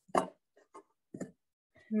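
A few short, separate scratches and taps of a pen writing on a paper worksheet on a desk.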